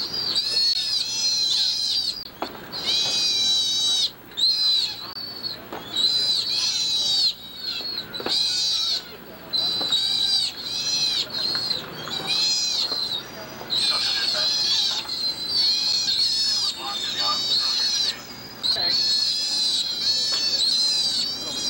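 Sea otters in pet carriers giving a long run of high, wavering calls, one after another with brief pauses.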